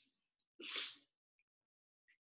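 One short breath noise from the presenter, lasting about half a second and starting just over half a second in; otherwise silence.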